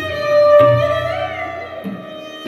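Sarangi bowed in a Hindustani classical performance: a held melodic note with small slides in pitch, swelling loudest about half a second in and then easing off.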